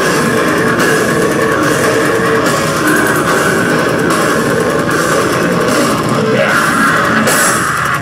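Deathcore band playing live: distorted electric guitars and a drum kit in a loud, dense, unbroken wall of sound, recorded from within the crowd.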